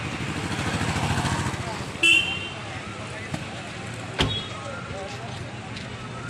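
Street noise with motorcycles and scooters: an engine running close by, swelling and fading over the first two seconds, then a short vehicle horn toot about two seconds in and a sharp click about four seconds in.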